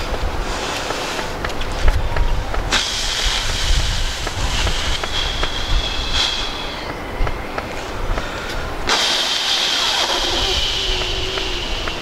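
A man blowing air out hard through puffed cheeks in two long blows, the first about three seconds in and the second near the end, each a hissing rush with a thin whistle in it. A steady low rumble runs underneath.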